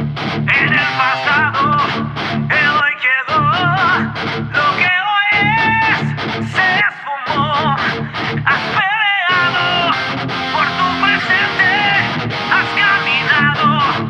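A rock band plays an instrumental passage: a distorted electric guitar riff with drums and bass, breaking off briefly several times, under a lead guitar melody full of bends and vibrato.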